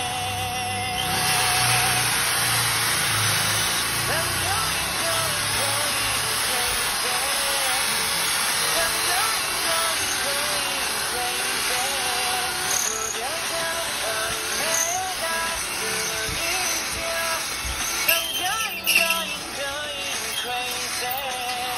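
Power drill running steadily as it bores into a steel bracket, with a couple of sharp knocks near the end. Background music with a singing voice plays over it.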